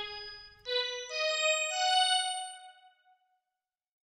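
ElectraX software synth sounding single notes as they are clicked into a piano roll: four notes enter one after another, each higher than the last, stacking into a chord. They ring on together and fade out about three seconds in.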